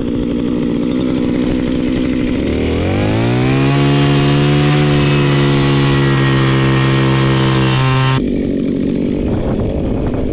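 Small gas engine of a Viper Quick-Start ice auger idling, then revving up about two and a half seconds in. It is held at full throttle while the auger bores through thick lake ice, and drops back to idle about eight seconds in.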